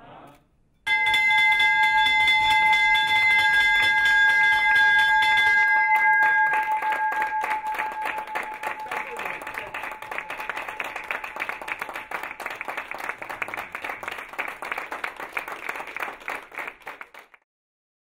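Ceremonial stock-exchange bell rung about a second in, ringing loudly with several clear tones that fade away over the next several seconds: the bell that opens the company's first day of trading. A small group applauds through the ringing, and the clapping goes on after the bell dies away until it cuts off suddenly near the end.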